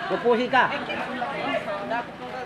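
Only speech: people talking.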